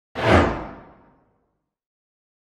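Whoosh sound effect of a logo intro: one sudden swoosh near the start that dies away over about a second, its hiss sinking in pitch as it fades.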